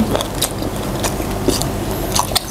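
Biting and chewing on spicy sauced chicken feet, with a few short sharp clicks from teeth and mouth.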